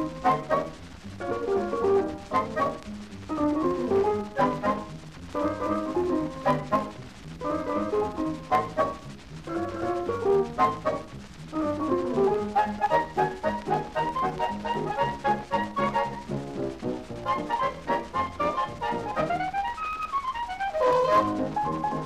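A 78 rpm shellac record playing a dance band's instrumental break with no singing. About 19 seconds in, a line swoops down in pitch and back up.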